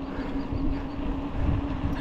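Steady low rumble of a car moving slowly along a street, engine and road noise with one constant hum.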